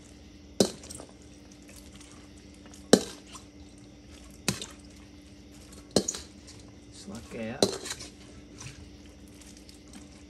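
A scoop knocking and scraping against the cooking pan about five times, a second or so apart, as cooked green beans are dipped out slowly to leave the water in the bottom. A steady low hum runs underneath.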